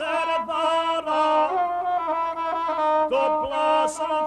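Gusle, the Balkan single-string bowed fiddle, played in a wavering, ornamented melody that accompanies a man's epic singing; a sung syllable sits at the very start.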